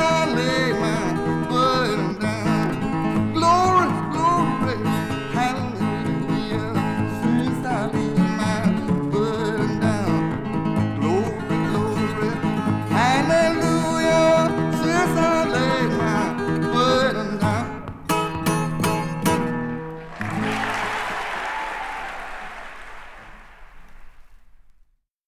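Solo guitar playing the closing instrumental of a country-blues gospel song with bent notes, stopping about twenty seconds in. Audience applause follows and fades out.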